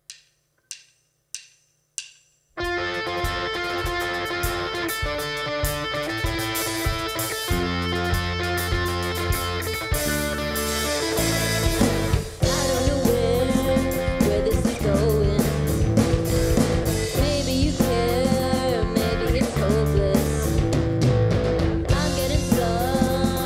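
Four count-in clicks about two-thirds of a second apart, then a rock band of electric guitar, electric bass and drum kit starts playing loudly. The band stops briefly a little past halfway, then comes back in, and a female voice begins singing soon after.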